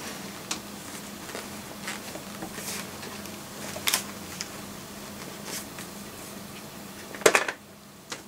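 Zorax full-face motorcycle helmet being worked down onto a head: scattered rubbing, scraping and light knocks of the shell and padding against hands and head, with a sharper cluster of knocks near the end, over a steady low hum.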